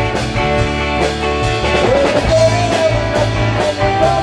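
A live rock band playing, with drums, electric guitars and a steady beat. About halfway through, a sustained lead line comes in on top, bending and wavering in pitch.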